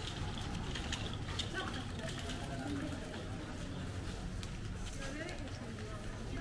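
Busy pedestrian street ambience: background chatter of several passers-by, none close, over a low steady rumble, with scattered footsteps and clicks on the cobbles.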